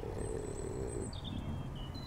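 Small songbirds singing: a few thin, high whistled notes, one sliding down about a second in, over a low steady rumble.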